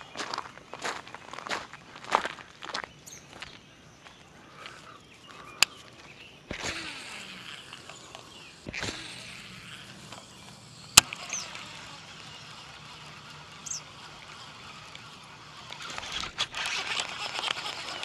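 Buzzbait being cast and reeled back from the bank: clicks and knocks of rod and reel handling, a single sharp click about eleven seconds in, and the lure's blade churning across the water surface, building louder near the end. A few short bird chirps.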